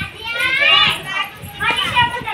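High-pitched voices talking and calling out, by their pitch children's voices.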